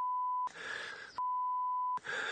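Two censor bleeps, a steady high beep tone laid over a soldier's speech: a short one of about half a second, then a gap of faint background hiss, then a longer one of nearly a second.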